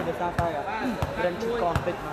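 A volleyball being struck during play: a few sharp slaps of hand on ball, over people talking.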